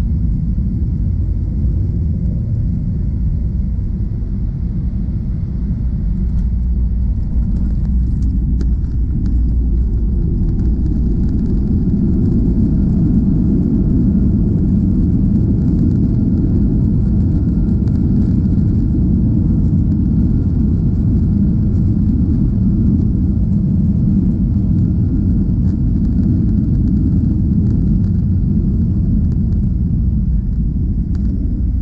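Cabin noise inside a Boeing 737-800 as it lands: a steady low rumble of its CFM56 engines and airflow, growing somewhat louder about ten seconds in.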